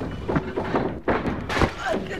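Voices speaking, with a dull thump about one and a half seconds in.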